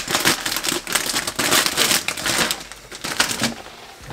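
Plastic and paper wrapping on a flower bouquet crinkling as it is handled and cut open. The crackling is dense for the first two and a half seconds or so, then becomes sparser and quieter.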